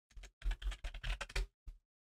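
Typing on a computer keyboard: a quick run of separate keystrokes as a word is typed into a text field.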